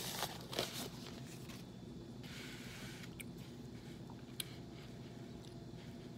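Paper napkin rustling and crinkling as a mouth is wiped, followed by fainter rustles and a few small clicks.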